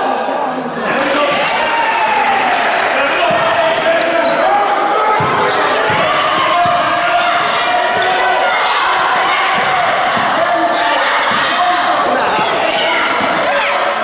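Indistinct spectators talking and calling out in a gymnasium, with a basketball bouncing on the hardwood court now and then.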